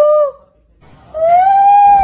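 A man calling out loudly through cupped hands in long, held howl-like calls: one call ends just after the start, and after a short pause a second, longer call comes in a little higher, rising slightly.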